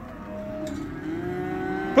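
Cattle mooing: several long calls from different animals overlapping at once.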